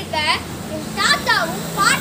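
Only speech: a boy's voice speaking.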